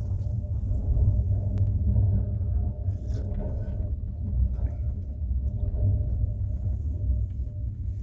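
Steady low rumble of a passenger train running along the track, heard from inside the carriage.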